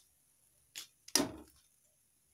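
Wire-mesh frying skimmer knocking against the steel kadai while lifting a fried egg bajji out of the oil: a short tap, then a louder metallic knock about a second in that quickly dies away.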